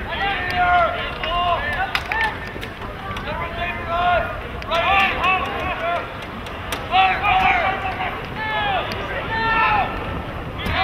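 Several voices shouting short, rising-and-falling calls during lacrosse play, with a few sharp clacks of sticks now and then.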